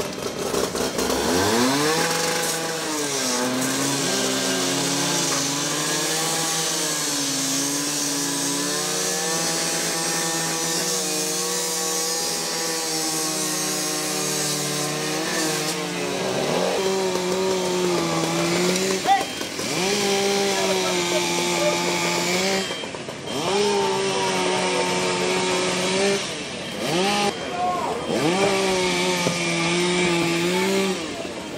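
Firefighters' gas-powered saw, a small two-stroke engine, running steadily and then revved again and again, each rev rising to a held high note for a couple of seconds before dropping off.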